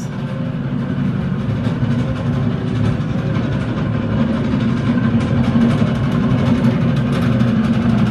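A loud, steady low rumble with a few faint steady tones above it.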